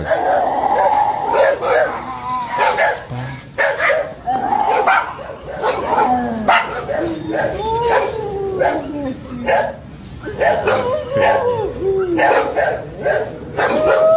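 Dogs barking frantically with high yips, between them drawn-out gliding cries that rise and fall, heard through a phone speaker. The sender takes the wailing for La Llorona.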